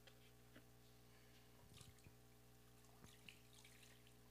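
Near silence: low room hum with a few faint water splashes and drips from a plastic foot-bath tub as a pitcher is handled over it.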